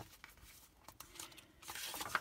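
Faint rustling and crinkling of vellum paper sheets being handled and turned over, with a few small clicks of paper.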